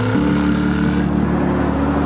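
Jaguar F-TYPE coupe engine under acceleration, its roar climbing in pitch. Just after the start the note changes, then it holds a steady, slowly rising tone.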